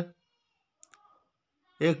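A single faint computer mouse click a little under a second in, in a quiet gap between stretches of a man's voice.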